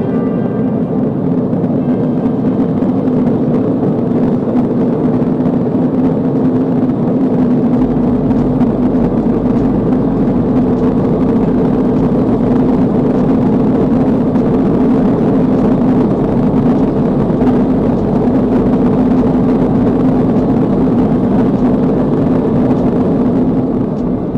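Sound installation of 280 prepared DC motors, each swinging a cotton ball on a wire against a cardboard box: a dense, steady pattering of countless soft taps on cardboard, with a steady hum underneath.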